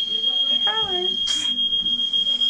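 Smoke alarm sounding a steady high-pitched tone, set off by smoke, with a brief voice and a short hiss partway through.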